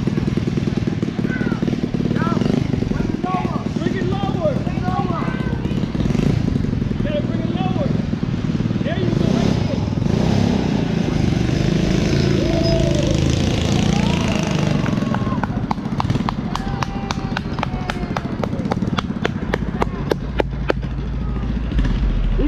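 A motorized kayak's 212cc single-cylinder small engine running steadily out on the water, mixed with indistinct voices, and a run of sharp clicks near the end.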